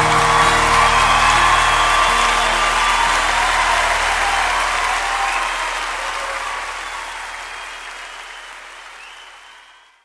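Audience applause on a live music recording, with the song's last guitar chord ringing out and dying away in the first couple of seconds; the applause then fades out gradually to silence.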